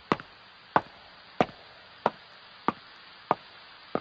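A regular series of sharp knocks, about one and a half a second, slowly growing fainter, over a steady hiss.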